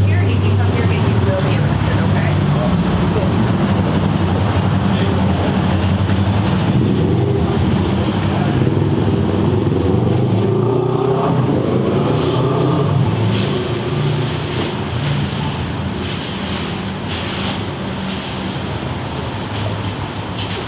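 A motor vehicle's engine running close by on the street, a steady low hum that fades out a little after halfway, over general street traffic noise.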